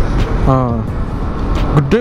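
Steady low wind rush and road noise of a Yamaha Aerox 155 VVA scooter being ridden along, with its engine running underneath. Wind is on the microphone.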